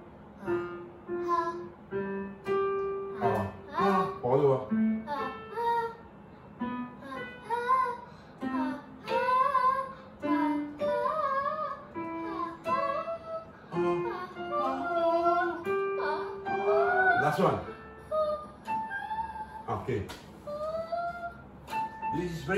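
A young girl singing a vocal warm-up exercise on an open vowel, her sung notes sliding up and down, over short held notes played on an electronic keyboard.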